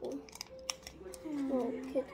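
A few short crackles of a chocolate bar's wrapper being torn and peeled in the first half-second, followed by a child's voice.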